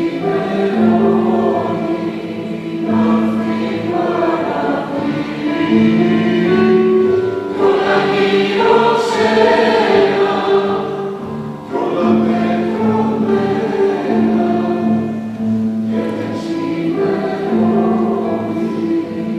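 Mixed choir of women's and men's voices singing a slow Greek song in long sustained phrases, swelling loudest about halfway through.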